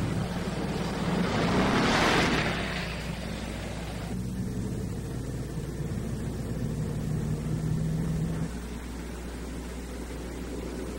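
A car driving on the road, heard from inside the cabin. A rushing swell of noise peaks about two seconds in, then the engine settles into a steady drone that drops away near the end.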